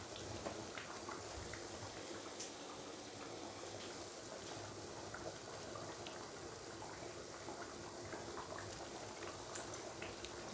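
Thick coconut-milk curry simmering in a pan, a faint, steady bubbling with small scattered pops.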